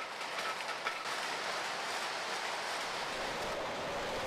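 Machinery running with a steady mechanical clatter.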